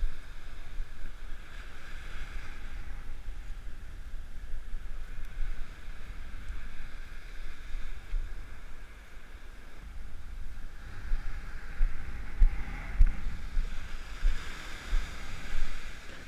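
Surf washing on a sandy beach, with wind buffeting the microphone in gusts. The wash of the waves grows louder over the last few seconds.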